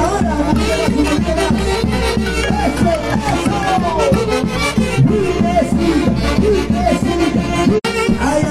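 Live Andean orquesta music: a section of saxophones plays a dance tune over a steady drum beat, the melody notes swooping up and down. The sound cuts out for a split second near the end.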